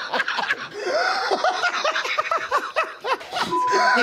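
Several people laughing together, overlapping bursts of laughter. About three and a half seconds in, a steady one-pitch censor bleep starts over a bleeped swear word.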